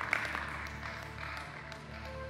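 Scattered claps from the congregation over soft, sustained background music.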